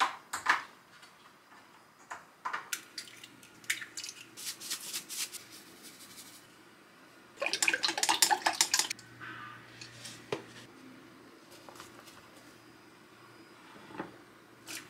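Wooden chopsticks beating eggs in a glass mixing bowl: a fast clatter of chopsticks against the glass for about a second and a half, just past the middle. Scattered taps and clinks of egg and bowl handling come before it.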